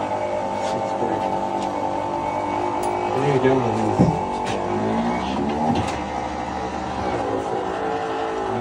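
Electric motor of a powered stair-climbing hand truck running with a steady whine. Its pitch dips under load about three and a half seconds in and again near six seconds, as it hauls the load up the stairs, with a sharp clunk about four seconds in.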